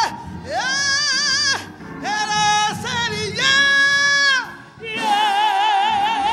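A woman singing solo gospel into a microphone, holding a series of long notes with wide vibrato, about a second each, with short breaths between them.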